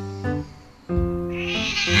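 A kitten meowing over background music.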